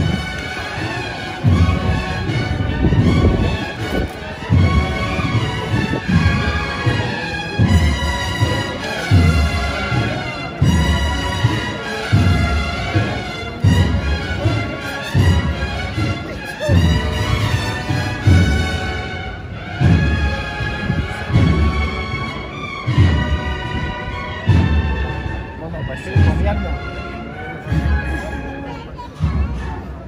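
A processional band playing a march: brass melody over regular low drum beats, about one every second and a half.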